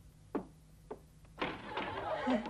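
A brief vocal grunt, then an audience starts chuckling and murmuring about one and a half seconds in, growing louder toward the end.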